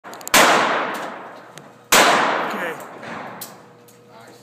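Two revolver shots about a second and a half apart, each followed by a long echoing decay in the enclosed space of an indoor shooting range.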